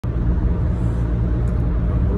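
Steady low rumble of road and engine noise inside a car's cabin while driving.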